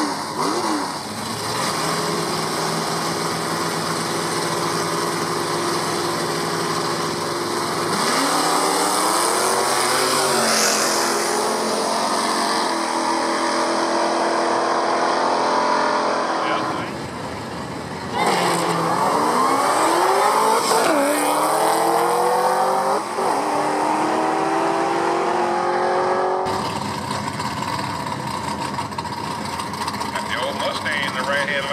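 Muscle cars launching off the line and accelerating hard down a drag strip, the engine note climbing and falling back in steps through the gear changes. This happens twice, about eight seconds in and again about eighteen seconds in.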